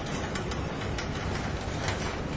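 CXD Smart Mat CMC computerised mount cutter running: a steady low hum with irregular sharp clicks, the strongest near the end.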